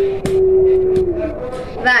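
A girl's voice holding one long hesitant hum on a steady note while she thinks, sliding down and stopping about a second in, followed by a short spoken word near the end.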